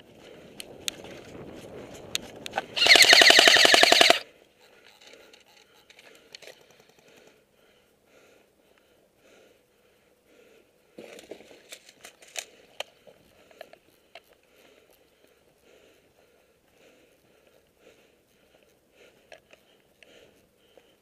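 Airsoft electric rifle firing one full-auto burst about three seconds in, a fast, even rattle of shots lasting about a second and a half. Fainter scattered clicks follow later.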